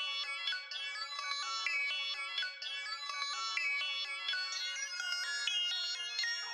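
Alchemy software synthesizer playing its 'Animated Swirls' rhythmic preset: a quick pattern of high synth notes stepping about three times a second, some wobbling slightly in pitch, with no bass underneath.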